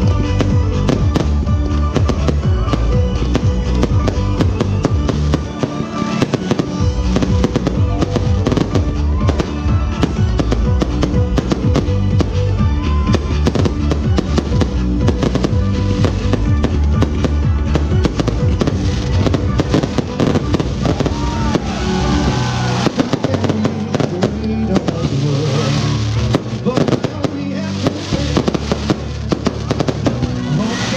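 A fireworks display going off in rapid succession, shell bursts and crackle piling over one another, over a loud music track with a steady bass beat.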